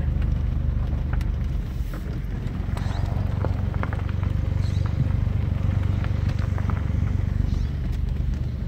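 A car heard from inside the cabin while driving slowly: a steady low engine and road rumble, with a few faint scattered clicks.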